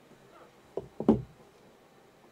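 Three quick knocks about three-quarters of a second to a second in, the last the loudest.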